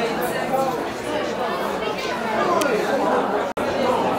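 Crowd chatter: many people talking at once, with no single voice clear. The sound cuts out for an instant about three and a half seconds in.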